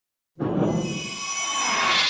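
Electronic logo-sting sound effect. It starts suddenly about a third of a second in: a low whoosh under a shimmer of high, held ringing tones that grows louder toward the end.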